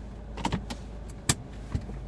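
A Ford's engine idling with a steady low hum, heard inside the cabin. Over it come four sharp clicks and knocks from the controls being handled, the loudest about a second and a quarter in.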